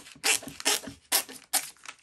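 Scissors snipping through thin plastic packaging: four short, crisp cuts about half a second apart.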